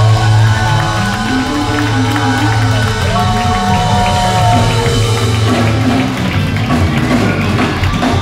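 Live band playing: electric bass, electric guitar, keyboard and drums with a woman singing. Long held notes sit over a steady bass line, with some crowd noise.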